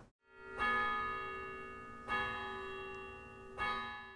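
Three bell-like chimes, each struck and left to ring with several steady overtones, about a second and a half apart, each fading before the next.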